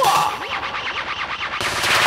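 Rapid stuttering electronic sound effect from a dance-track vocal stem: a quick upward sweep, then a fast run of short repeated hits like machine-gun fire.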